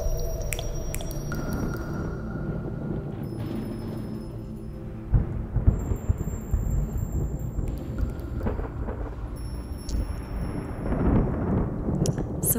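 Thunderstorm field recording used as a film soundtrack: low, rolling thunder rumbles over rain, swelling about five seconds in and again near the end. A few faint tinkles of small brass bells are heard near the start.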